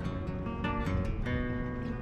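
Acoustic guitar music: strummed chords that change about every half second.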